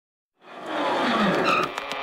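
Cartoon sound effect of a car speeding past with a squeal of tyres, starting suddenly about half a second in and building up loud.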